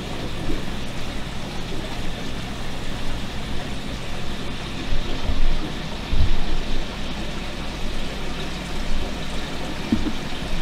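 Steady rushing and splashing of a large aquarium's circulating filtration water, with two low thumps about five and six seconds in.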